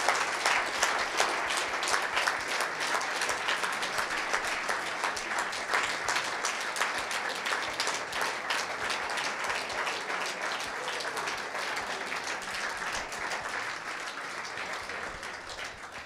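Audience applauding, a dense patter of many hands clapping that slowly dies down toward the end.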